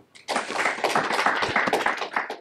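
Audience applauding, the clapping starting about a third of a second in.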